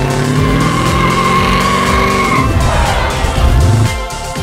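Modified Holden Commodore sedan with a blower scoop on its bonnet driving past at close range, its engine loud and rising in pitch toward the end. A high steady squeal sounds over it and stops about two and a half seconds in.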